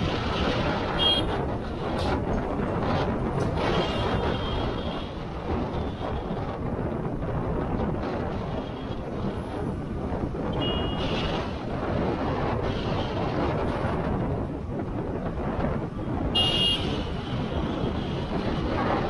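Steady rush of wind and road noise from a moving vehicle, with brief high vehicle-horn toots about a second in, around four seconds, near eleven seconds and again near sixteen and a half seconds.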